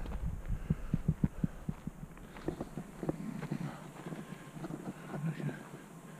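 Dull thumps and rustling on a carried camera's microphone from walking over dry ground, thickest in the first two seconds, with a faint murmur of a voice later on.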